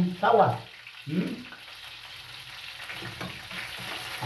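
Chicken pieces sizzling in a frying pan on a gas stove while a spoon stirs and turns them. The sizzle grows slightly louder toward the end, with a few faint scrapes. A man's voice is heard briefly in the first second and a half.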